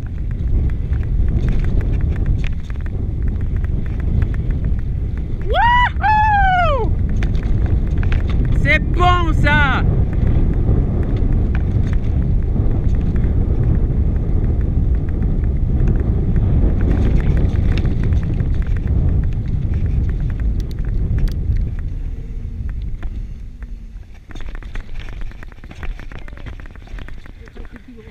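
Mountain bike riding fast down a dirt singletrack: wind buffeting the helmet-camera microphone over the rumble and rattle of tyres on the trail, easing off about three-quarters of the way through. Two short rising-and-falling calls cut through about six and nine seconds in.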